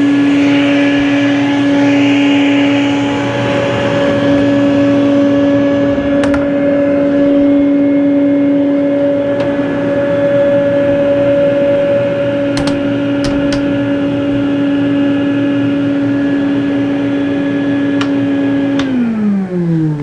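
Shop vac running steadily inside an insulated CNC router enclosure, a loud steady whine with a hiss that eases a few seconds in; the sound is substantially quieter with the enclosure closed. A few light clicks along the way, and near the end the vacuum is switched off and its whine falls in pitch as the motor winds down.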